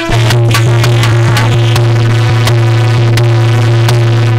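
Instrumental interlude of a North Indian folk song: a steady held low tone runs under regular drum strokes, with no voice.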